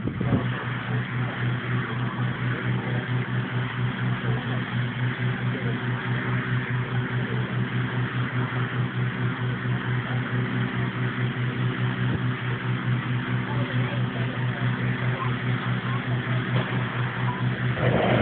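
Petrol-engined inflator fan running steadily, blowing cold air into a hot-air balloon envelope on the ground: a constant low engine hum with a fast, even pulse.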